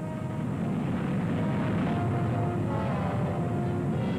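Steady aircraft engine noise on an old film soundtrack, with music playing faintly underneath.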